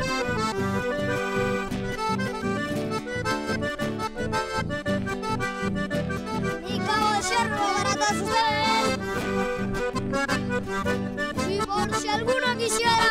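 Instrumental chamamé played on a Hohner button accordion, with an acoustic guitar strumming an even beat underneath.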